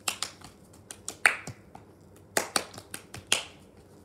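A person snapping their fingers: an irregular run of about a dozen sharp snaps, in two clusters, the loudest a little over a second in.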